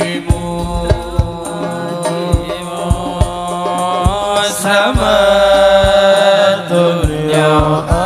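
A group of male voices singing a shalawat melody together, with frame-drum strikes keeping a steady beat underneath. The singing grows louder about five seconds in.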